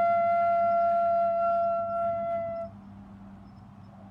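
Concert flute holding one long final note that ends about two and a half seconds in, leaving only a low electrical hum. It is heard over a video call.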